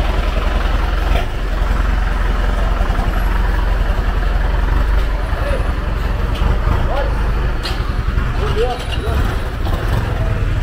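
A Hino cargo truck's diesel engine running close by: a steady, loud low rumble, with voices and a few short higher-pitched sounds over it in the second half.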